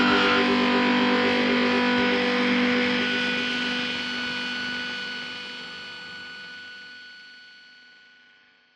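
The closing sound of a noise-rock song: distorted electric guitars hold a sustained, ringing chord that fades away slowly over the last few seconds.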